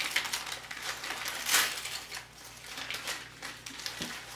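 Wrapping being crinkled and pulled off a small wrapped item by hand, with irregular light clicks and knocks as the item is handled on the table; the loudest rustle comes about one and a half seconds in.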